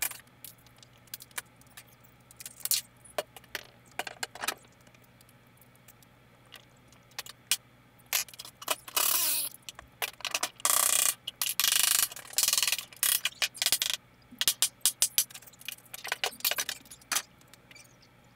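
Metal tools and hardware clinking and knocking as they are handled, with a few rough scraping stretches, each about a second long, in the middle.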